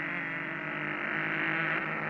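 Car engine sound effect for the racing cartoon cars: a steady drone that slowly grows a little louder.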